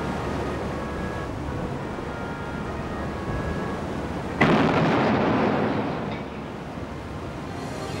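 Dubbed-in naval gunfire sound effect: a steady low rumble, then a single heavy boom about four and a half seconds in that dies away over a second or two.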